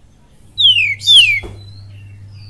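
Oriental magpie-robin giving two loud, clear whistles half a second apart, each sliding steeply down in pitch.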